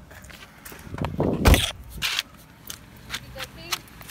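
A car door shutting with one solid thump about a second and a half in, followed by scattered footsteps and handling knocks while walking on grass.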